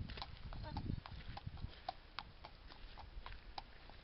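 A horse's hooves clip-clopping on a tarmac lane at a walk, about three footfalls a second, growing slightly fainter as it moves away.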